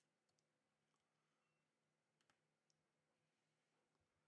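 Near silence, with a handful of faint small clicks: flex-cable connectors being pressed onto a smartphone's motherboard during reassembly.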